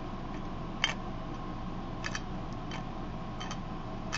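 A few light plastic clicks as a small brick-built toy starfighter is handled and jiggled in the hand, the sharpest about a second in, over a steady low room hum.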